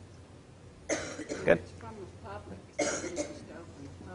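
A person coughing twice, about a second in and again near three seconds, with faint speech from the room between the coughs.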